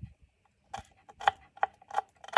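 Kitchen knife chopping garlic cloves on a wooden cutting board: four sharp knocks of the blade on the board, about two a second, starting under a second in.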